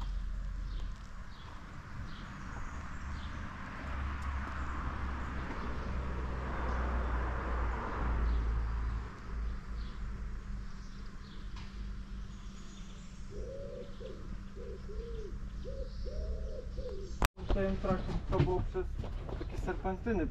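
Outdoor background with birds chirping. One bird gives a low call of about five repeated notes a little after two-thirds of the way through. After a sudden cut near the end, men's voices take over.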